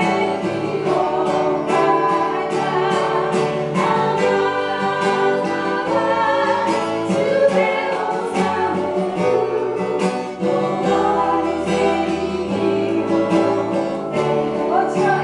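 A worship song: several voices singing together over a strummed acoustic guitar, steady and unbroken.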